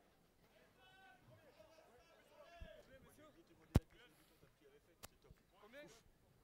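Faint voices talking and calling, with one sharp knock about four seconds in and a lighter one about a second later.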